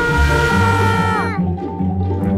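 Cartoon background music under a rushing wind sound effect from a giant hair dryer. A long high held note rides over it, slides down and stops, together with the wind, just over a second in.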